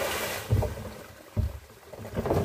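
Fermented liquor wash splashing out of a tipped plastic drum onto the ground, fading away within the first half second, followed by two dull thumps.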